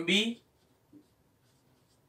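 Faint scratching of a marker pen writing on a whiteboard, after a short spoken syllable at the start.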